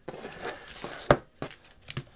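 Foil trading-card packs rustling and crinkling as they are picked up and handled, with a sharp click about a second in and a few lighter taps after it.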